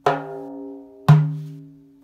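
Hand-played frame drum: two ringing strokes about a second apart, the second a deep bass "dum", part of a slow Karşılama rhythm in 9/8.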